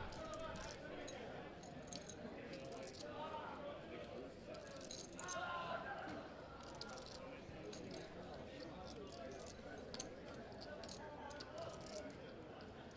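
Faint murmur of voices at a poker table, with poker chips clicking lightly and repeatedly as they are handled.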